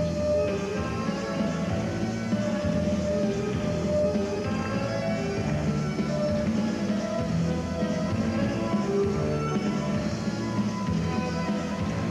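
The music of a pairs figure skating short program, a steady run of melody notes at an even level.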